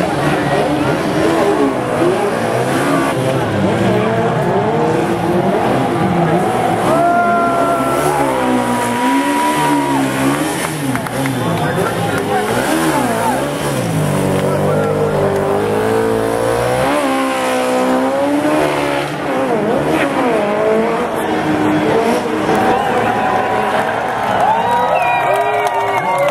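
Legends race cars running, their engines revving up and down over and over as they are driven hard, with some tyre squeal.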